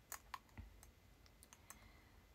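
Near silence broken by about half a dozen faint, short clicks at irregular spacing.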